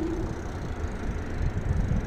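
E-bike riding on throttle alone at low assist: a low rumble of wind on the microphone and tyres on the road, with the motor's faint whine rising in pitch and fading in the first half-second.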